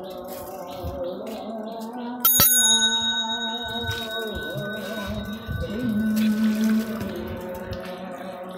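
A bicycle bell struck once, a sharp ding about two seconds in whose ring fades slowly over the next few seconds, over steady background music.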